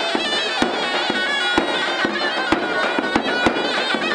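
Traditional dance music: a shrill reed-pipe melody, zurna-like, over a deep drum struck about twice a second.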